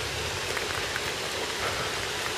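Steady outdoor hiss of water noise with faint scattered patter, the sound of light rain or splashing water.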